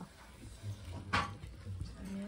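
Metal chopsticks clinking once against a stone stew pot about a second in, over a low steady room hum.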